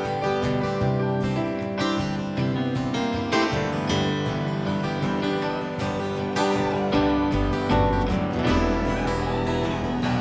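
Live rock band playing an instrumental passage with no singing: acoustic guitar strummed up front over keyboards, electric guitars, bass and drums. The bass line grows heavier about seven seconds in.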